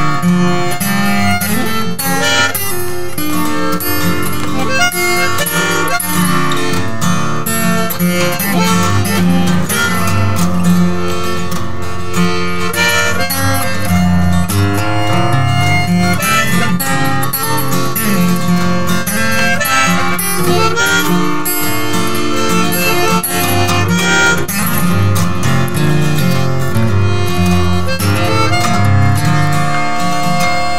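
Harmonica and acoustic guitar playing an instrumental passage of a folk song, without singing.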